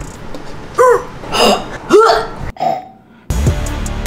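A woman making a few short guttural throat noises, jerky croaking sounds forced from the throat. Music starts near the end.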